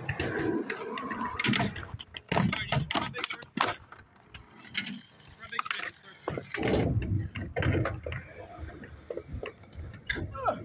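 Skateboards on concrete: sharp clacks and knocks of boards throughout, and a rumble of wheels rolling from about six and a half to eight seconds in, with people's voices under them.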